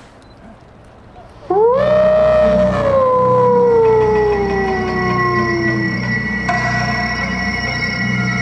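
Loudspeaker playback of a yosakoi performance track's opening: a long howl-like call cuts in suddenly about a second and a half in, swells up in pitch and then slides slowly down over about four seconds. Steady held tones take over near the end.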